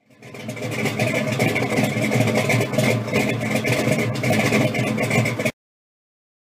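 An engine running steadily, fading in at the start and cutting off suddenly about five and a half seconds in.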